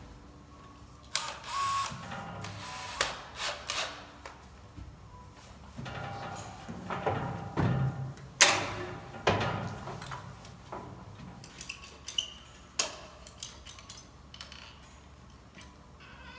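Irregular clicks, knocks and scraping of hand tools and hardware being handled while a crypt opening in a mausoleum wall is worked on. The loudest knock comes about eight seconds in.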